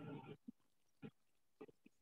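Near silence, with a few faint, brief sounds scattered through it.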